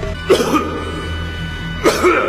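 Anime soundtrack: sustained background music with two short, sharp bursts, one just after the start and one near the end.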